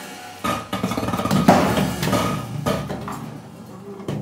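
Free-improvised percussion: irregular knocks and clatters on small struck objects, about eight in four seconds, each ringing briefly, over a faint held tone.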